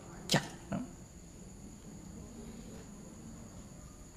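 Faint, steady, high-pitched chirring of crickets in a quiet pause. In the first second there are two short noises: a brief rushing one, then a shorter, lower one.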